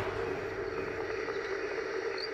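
A steady, even hum with a faint hiss and no rhythm or distinct events.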